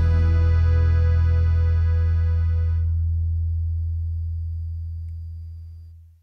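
The final chord of a sung song ringing out on acoustic guitar with a deep bass note. The upper notes die away about three seconds in, and the bass fades steadily until the sound is cut off at the end.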